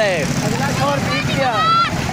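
Motorcycle engines running steadily at low speed beneath a man's shouted voice, the shout ending in a held rising call near the end.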